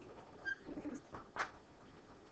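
Quiet classroom pause: faint, indistinct murmuring with a brief high squeak about half a second in and a light click near the middle.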